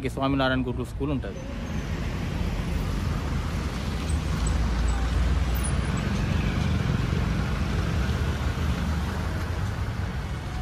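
A man's voice for about the first second, then a steady low rumble of outdoor background noise with no distinct events.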